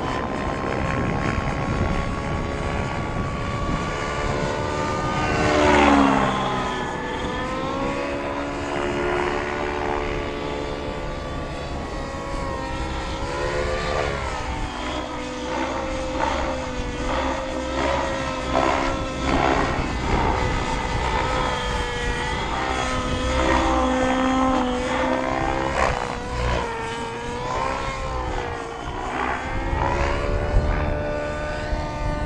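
Nitro RC helicopter (Align T-Rex 700N with a YS 91 SR-X glow engine) flying manoeuvres: engine and rotor whine rising and falling in pitch as it works through the air. It is loudest about six seconds in, as it passes close and its pitch drops sharply.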